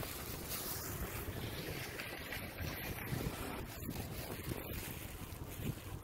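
Wind buffeting a phone's microphone outdoors: a steady rumbling hiss with no distinct events.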